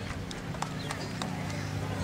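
Quiet outdoor arena ambience: a low steady hum with a few faint clicks.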